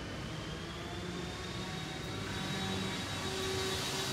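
Steady mechanical hum with a thin high whine that rises slightly in the first second and then holds, with no speech over it.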